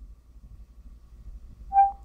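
Windows Phone 8.1 Cortana chime from the phone's speaker: one short, pure electronic tone near the end, after a stretch of low, steady room hum. It is the tone Cortana plays when it has finished listening to a spoken command.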